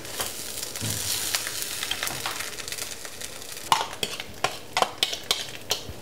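Food sizzling in a frying pan on a gas stove, with a utensil stirring in the pan. In the second half come a run of sharp clicks and knocks of the utensil against the pan.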